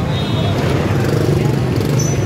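Busy street noise: a crowd's mixed chatter over running motorbike and car traffic, steady throughout.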